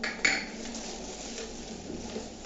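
Plastic toner cartridge for an HP 402dn laser printer being handled: two sharp hard-plastic clicks in the first half second as it is gripped and turned, then quieter handling noise.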